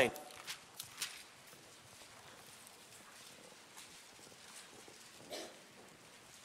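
Quiet hall with a few faint taps and rustles in the first second and one soft, brief sound near the end: Bibles being turned to a passage.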